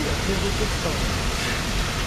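Steady road and engine noise of a moving car, heard from inside the cabin, with a brief faint voice murmur in the first second.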